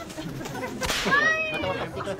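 A single sharp whip-crack, a slapstick sound effect marking a hit, about a second in, followed by a brief falling tone.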